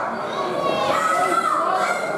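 Crowd of spectators talking and shouting, with children's voices among them.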